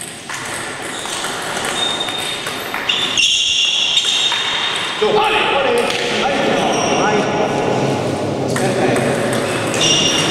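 Table tennis ball clicking back and forth between paddles and table during a short rally, in a large hall. From about halfway through, voices take over.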